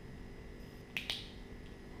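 Pen torch's push-button switch clicking once about a second in, a sharp quick double click as the light comes on.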